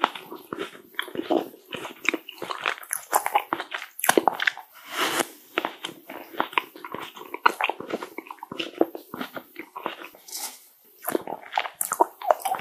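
Close-miked chewing of green tea ice cream, a dense run of irregular small mouth clicks and smacks.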